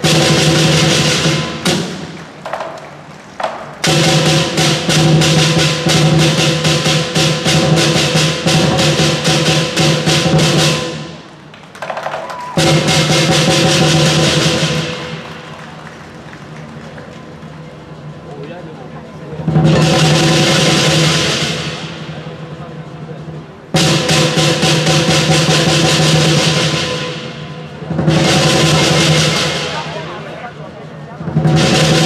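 Lion dance percussion ensemble of drum, cymbals and gong playing fast drum rolls with ringing cymbal and gong tones, coming in loud spells of a few seconds with quieter stretches between.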